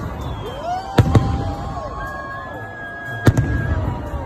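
Aerial fireworks bursting overhead: two sharp bangs in quick succession about a second in and another loud bang just after three seconds, over continuous crowd noise.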